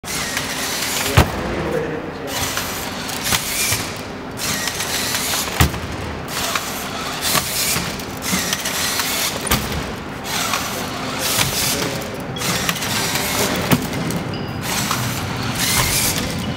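Legged walking robot stepping, with a sharp knock every few seconds, over a steady din of voices and noise in a large hall.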